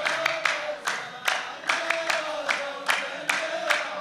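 A line of men clapping together in a steady rhythm, about two to three claps a second, while chanting a drawn-out sung refrain in unison: the clapping chorus line (saff) of a Saudi muhawara sung-poetry duel.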